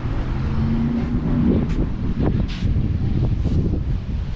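Wind rumbling on the microphone, with a steady low hum for about the first second.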